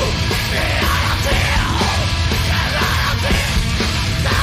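A heavy metal band playing live: a vocalist shouts over heavy guitars and a steady, driving drumbeat.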